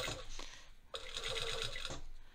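Sewing machine stitching slowly through fabric in two short runs: running at first, pausing briefly, then stitching again about a second in and stopping just before the end.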